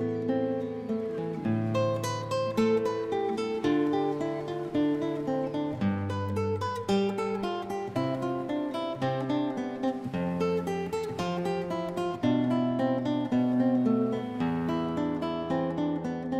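Solo acoustic guitar playing a passacaglia: a plucked melody over bass notes that change about every two seconds.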